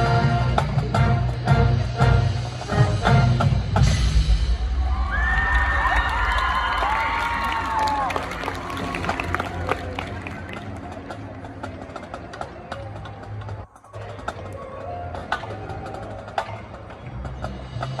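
High school marching band playing its field show: loud brass and drums with a run of heavy percussion strikes in the first few seconds, then wavering high gliding notes. After that comes a quieter, sparse passage with scattered light percussion clicks, and the sound drops out for an instant about fourteen seconds in.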